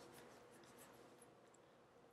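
Near silence: faint room tone in a pause between sentences of speech.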